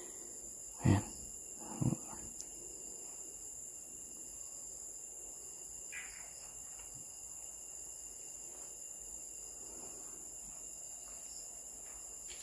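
Steady high-pitched chorus of night insects, crickets, trilling without a break, with a brief louder sound about two seconds in.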